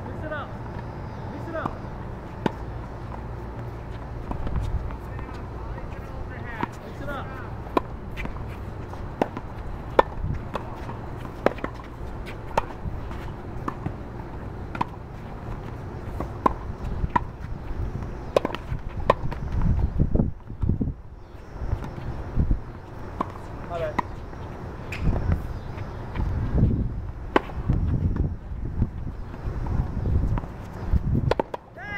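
Tennis balls struck back and forth with rackets in a rally: a sharp pop roughly once a second, with low rumbling noise in the later part.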